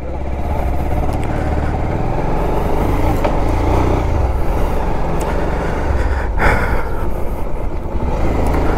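Motorcycle engine running as the bike rides off along a paved lane, loudness building over the first second as it pulls away, with a steady heavy rumble on the microphone.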